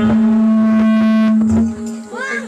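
A single loud, steady held musical note, rich in overtones, that lasts about a second and a half and then drops away.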